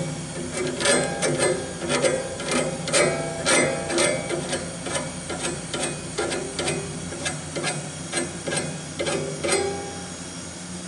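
Hand file scraping across the teeth of a steel band sawmill blade, in repeated short strokes about two a second, sharpening the teeth.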